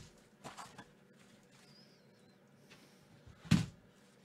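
Quiet tabletop handling noises: a few faint soft taps, a faint high wavering chirp a little before two seconds in, and one louder short thump or scuff about three and a half seconds in.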